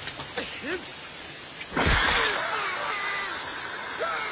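Heavy rain falling steadily. About two seconds in comes a sudden loud wet splat, a dilophosaurus spitting venom into a man's face, followed by wavering cries.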